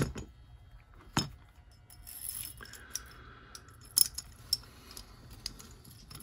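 Small steel pistol parts clicking and clinking as the slide, recoil spring and guide rod of a Llama Especial .380 are handled and fitted together during reassembly, with a little fumbling. A few sharp clicks, about a second in and around four seconds, with faint handling noise in between.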